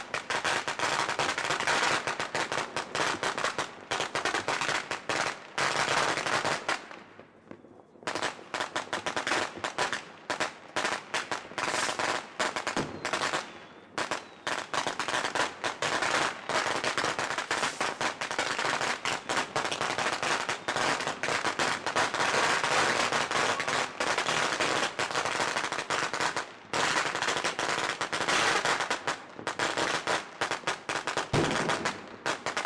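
New Year's Eve fireworks and firecrackers going off: a near-continuous crackle of rapid bangs, easing briefly about seven seconds in.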